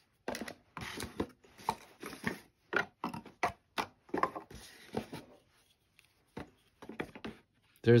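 Cardboard boxes handled and opened by hand: a string of short, irregular taps, scrapes and rustles of paperboard as an inner box is pulled out and its lid lifted.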